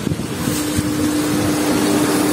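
A pump in a koi tank's aeration setup runs with a steady hum, which comes in about half a second in. Under it, the aerated water bubbles and crackles.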